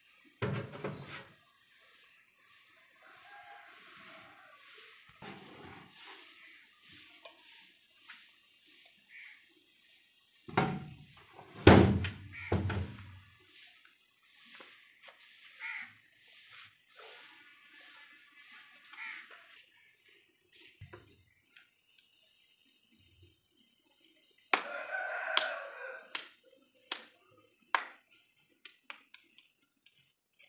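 A rooster crowing and chickens clucking, mixed with sharp knocks and clatter, the loudest a cluster of thumps about eleven to thirteen seconds in.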